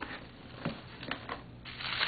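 A few light clicks and taps of handling inside a cardboard box, then, near the end, a louder rustling crinkle as a hand presses onto the plastic packing sheet wrapped around the boxed pot.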